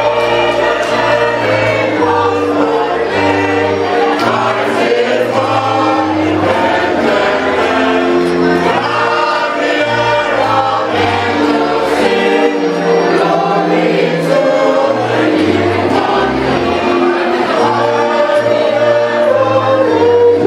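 Mixed choir of men and women singing in several parts at once, picked up through microphones and played over loudspeakers.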